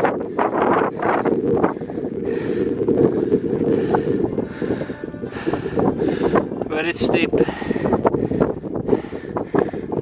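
Wind buffeting the camera microphone, a steady rumble through the whole stretch, with a single spoken word about seven seconds in.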